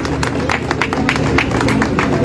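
A crowd clapping their hands in applause: a dense, uneven run of many claps.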